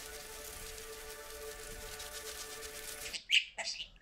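Instrumental music with sustained held tones, which cuts off abruptly about three seconds in. It is followed by a few loud, sharp chirps from a pet budgerigar near the end.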